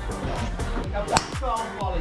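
Background music with a beat, and about a second in a single sharp crack of a golf club striking a ball.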